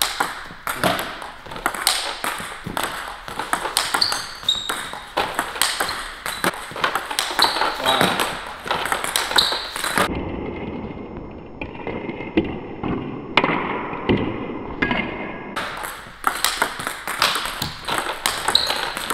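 Table tennis rally: a celluloid-type plastic ball clicking off the rubber of two rackets and bouncing on the table in a quick, steady back-and-forth of sharp ticks.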